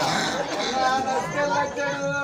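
Speech: performers' voices talking, with no other sound standing out.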